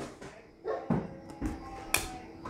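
Quiet handling of a stack of baseball trading cards as one card is moved off the top, with a sharp snap of card stock near the end.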